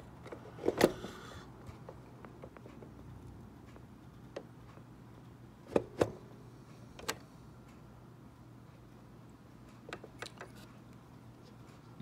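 Scattered short clicks and light knocks from handling a removed Mercedes W124 instrument cluster and its circuit board, the loudest about a second in and a close pair around six seconds, over a faint low hum.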